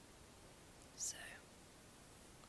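Near silence with one short, hissy whispered sound from a woman about a second in.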